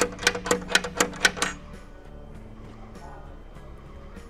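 Metal latch on a steel container window shutter being worked by hand: a quick run of sharp metallic clicks, about eight a second, for the first second and a half, then stopping.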